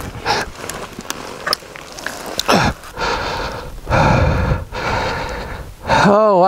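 A helmeted rider breathing hard in and out close to the microphone, a run of long breaths with short gaps between them, as he catches his breath after a crash. A short falling sigh comes about two and a half seconds in.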